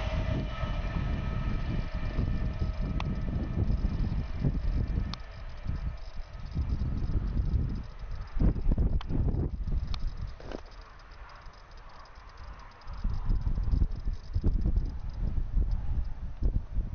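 A CrossCountry Voyager diesel train running away into the distance, its engine hum fading over the first few seconds, with uneven low wind rumble on the microphone.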